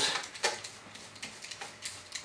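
Small foam sponge roller rolled back and forth through wet acrylic paint and a loaded brush on a palette tray, loading the roller: a faint sticky rolling with a few light clicks scattered through it.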